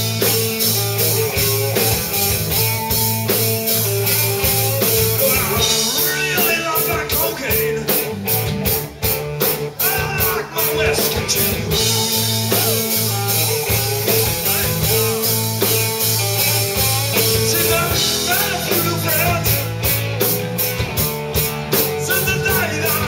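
Rock band playing live: electric guitar, electric bass and drum kit together, with the drum and cymbal hits standing out from about six seconds in and again near the end.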